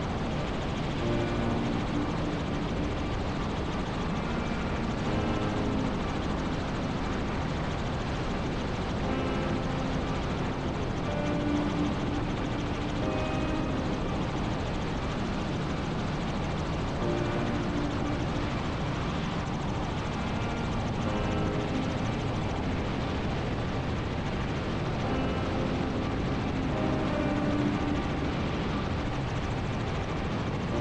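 Helicopter in level cruise flight: steady, unchanging rotor and engine noise mixed with rushing air, with faint short tones recurring every couple of seconds.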